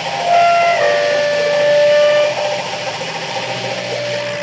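Live noise music: a dense, steady wash of electronic noise and drone from keyboard, guitar and effects pedals. A few held electronic tones come in about a third of a second in and drop out a little after two seconds, where it is loudest.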